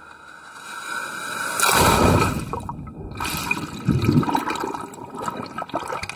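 Ocean wave breaking and whitewater rushing, in two loud surges about two and four seconds in, fading away near the end.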